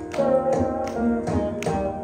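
Veena and mridangam playing Carnatic music in raga Shankarabharanam: plucked, sustained veena notes over a run of mridangam drum strokes.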